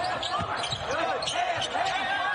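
A basketball bouncing on a hardwood court several times during play, with voices in the background.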